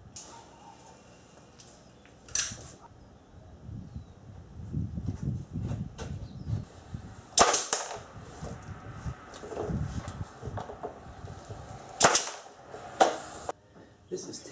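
Pneumatic staple gun driving one-inch staples through pine framing into a plywood wall panel: four sharp shots at uneven intervals, the loudest about halfway and near the end, with shuffling and handling noise between them.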